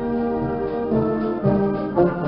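Concert band playing a Mexican military march, with the brass and trombones to the fore. Held chords change a few times within the two seconds.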